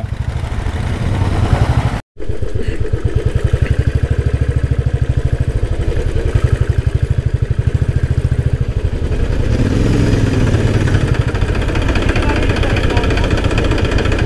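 Motorcycle engine running at low speed with an even, rapid pulsing beat, heard up close from on the bike. The sound cuts out completely for a moment about two seconds in.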